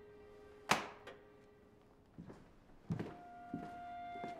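A single sharp thunk about a second in, followed by a few fainter knocks, over soft background music with long held notes.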